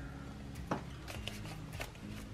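Quiet kitchen sound: a few faint soft taps and rustles as ingredients are handled in a slow cooker's pot, over a low steady hum.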